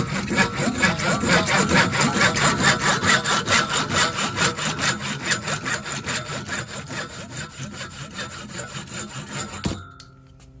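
Lenox 18-inch PVC/ABS hand saw cutting through white PVC pipe in fast, even back-and-forth rasping strokes. The strokes grow somewhat quieter over the second half and stop abruptly near the end as the blade finishes the cut.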